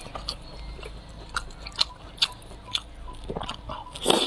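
A person biting and chewing food close to the microphone, with sharp wet smacks roughly every half second through the middle, over a low steady hum.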